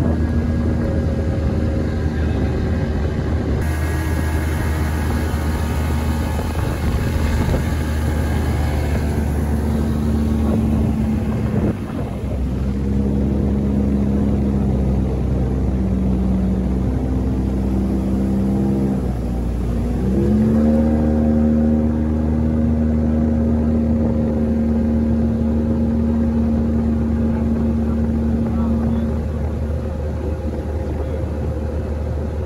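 A small boat's outboard motor running at a steady cruising speed, with a brief dip about twelve seconds in and a drop in pitch that picks back up about twenty seconds in, as the throttle is eased and reopened.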